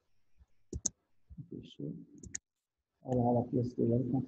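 Computer mouse button clicks: a quick pair about a second in and another pair about two and a half seconds in, with quiet talk between them.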